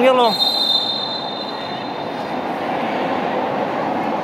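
A referee's whistle blown once, a long, shrill, steady blast of about a second that fades out, over the steady crowd noise of a sports hall.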